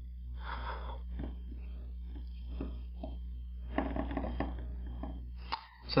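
Faint handling noises, a few light knocks and rustles of molds and cups being moved on a plastic tray, over a steady low hum that fades out near the end.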